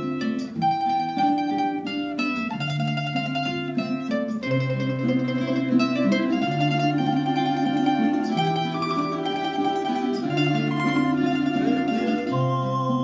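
Ensemble of Spanish plectrum instruments and guitars playing a bolero, the plucked melody and chords ringing over long held bass notes that change about every two seconds.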